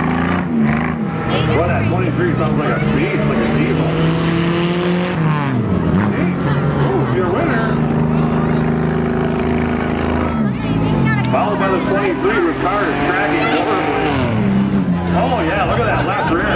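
Several demolition derby cars racing on a dirt track, their engines revving up and dropping off in turn, with marked drops about five seconds in and again about ten and a half seconds in.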